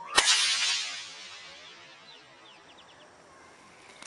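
A single bullwhip crack from an overhand flick, the crack made at the full length of the whip: one sharp snap, then a hiss that dies away over about a second.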